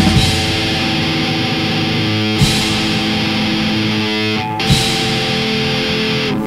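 Instrumental passage of a rock song: electric guitar chords held and changing twice, each change marked by a short sharp hit.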